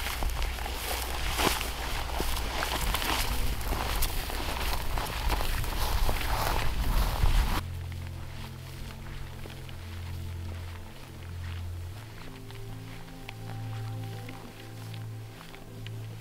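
Footsteps through dry grass with rustling of clothing and pack for about the first half, over low music. About halfway through the footsteps stop abruptly, leaving only background music of slow, sustained low notes.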